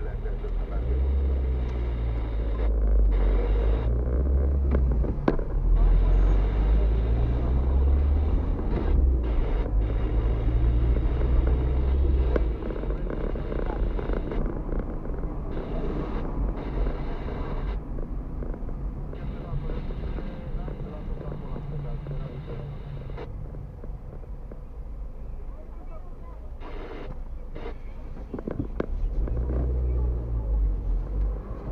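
Car engine and road rumble heard inside the cabin while driving in town traffic. The low rumble is heavier for the first twelve seconds or so, then eases and picks up again near the end.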